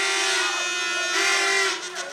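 Two long horn blasts from the rally crowd, each held on one steady note: the first ends about half a second in, the second sounds for about half a second starting a little over a second in.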